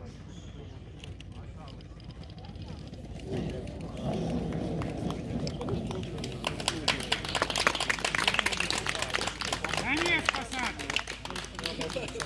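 Onlookers clapping, with voices talking; the first few seconds are quiet, talk starts about three seconds in and the clapping builds from about six seconds in.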